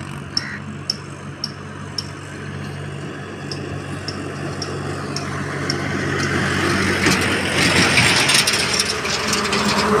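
A farm tractor's diesel engine runs steadily as it passes towing a trailer, with light ticks about twice a second. From about seven seconds in, the rush of a heavy Tata tanker truck swells as it approaches.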